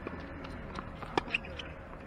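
Tennis ball impacts during a rally on a hard court: two sharp pops close together a little over a second in, over light footfalls as the player moves to the ball.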